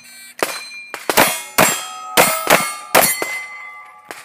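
Five rapid gunshots about half a second apart, each followed by the ringing clang of a steel target plate being hit.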